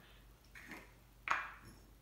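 A small glass spice jar with a metal lid being opened by hand: a soft scrape, then a single sharp click a little past a second in.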